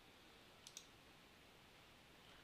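A computer mouse button clicked twice in quick succession about two-thirds of a second in, over near silence.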